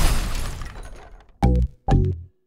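A glass-shatter sound effect fading out over the first second, followed by two short, bass-heavy beats of electronic music.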